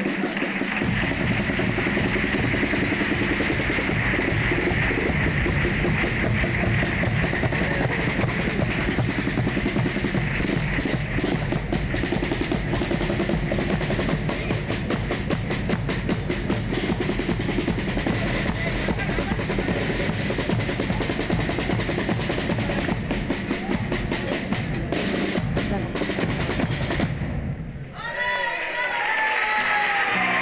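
A carnival chirigota's bass drum and snare-type drums playing a steady, busy beat with the group's instruments, stopping abruptly about 27 seconds in.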